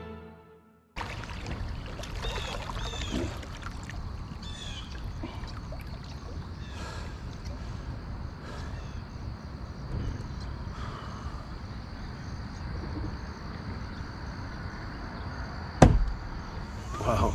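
Background music fades out, then water trickles and ripples along the hull of a pedal kayak gliding across a pond, with birds chirping now and then. A single sharp knock near the end.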